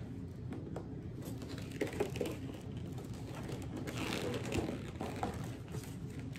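Cardboard gift box being handled: faint rubbing, scraping and a few light taps as a box is worked against its tight cardboard sleeve.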